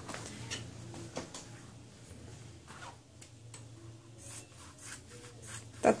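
Fabric scissors cutting EVA foam sheets: faint, irregular snips mixed with the soft rubbing of the foam sheets being handled.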